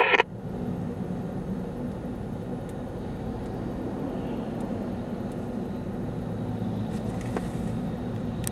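Steady low drone of a vehicle's engine and road noise, heard from inside a vehicle travelling slowly with the oversize load.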